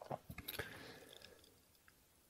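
Faint mouth clicks and a soft breath from a man pausing between sentences of speech.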